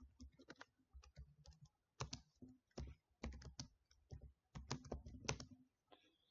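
Faint keystrokes on a computer keyboard, tapped in quick irregular runs as a short command is typed.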